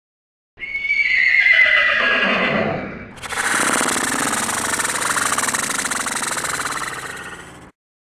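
Horse whinny, dubbed in as a sound effect: a loud call that falls in pitch, starting about half a second in. It is followed from about three seconds in by a longer, rough, rapidly pulsing neigh that cuts off abruptly just before the end.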